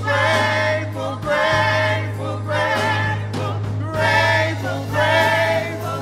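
Church praise team singing gospel together through microphones, in phrases of about a second and a half, over a steady low sustained accompaniment note.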